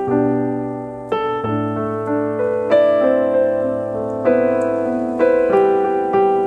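Background music: a slow, gentle piano piece, with notes and chords struck every second or so and each fading away before the next.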